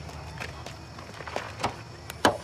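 Footsteps of people walking on a dirt road: a few separate scuffs and steps over a steady low rumble.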